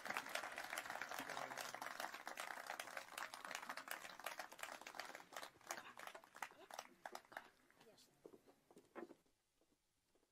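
Applause from a small audience: dense clapping that thins out after about six seconds and has died away by about nine seconds in.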